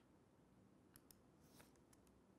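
Near silence: room tone, with two faint short clicks about a second in, from a computer mouse being clicked.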